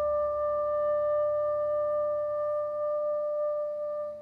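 Jazz quartet recording ending on a long held note that rings steadily, with the low bass dropping away about three seconds in.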